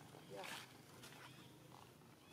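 Near silence, broken by one short voice sound about half a second in and a faint click about a second in.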